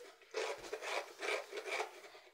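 Coconut flesh being grated by hand over a plastic tub: a run of short scraping strokes, about five in under two seconds, starting about a third of a second in.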